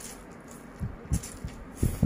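Instant noodles being slurped and eaten close to the microphone, with a few short, dull thumps and hissy sucks in the second half.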